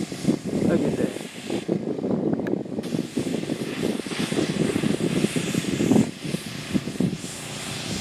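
Pressure washer running, a steady rough drone as the spray plays over a fence.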